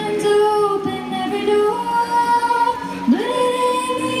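Live folk band: a woman singing long held notes over acoustic guitar and bass, with a new sung phrase swooping up into a held note about three seconds in.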